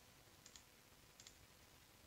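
Two faint computer mouse clicks, about three-quarters of a second apart, over near-silent room tone.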